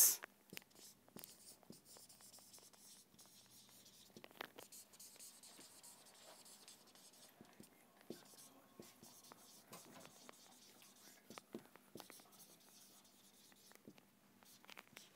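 Marker pen writing on a whiteboard: faint, irregular short strokes and taps as words are written out.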